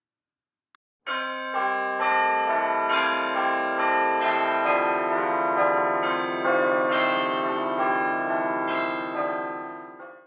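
Bells ringing: a loose run of strikes about every half second, starting about a second in, their tones overlapping into a sustained ringing chord that fades out at the end.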